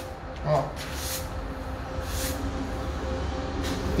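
Three brief rubbing swipes across a dusty, freshly sanded plaster render wall, showing loose dust still coming off it, over a steady low background rumble.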